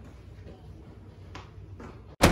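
A person getting up from a table and walking away in a quiet room, with two faint short knocks near the end.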